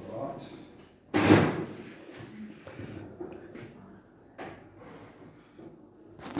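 A loud bang about a second in, followed by a few lighter knocks and clicks. A voice is heard briefly at the start.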